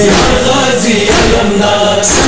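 Male reciter and male chorus singing a Muharram noha (lamentation chant), holding long drawn-out notes between lines of the verse.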